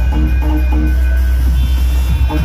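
Loud electronic dance music: a short melodic figure repeating over a heavy, unbroken bass.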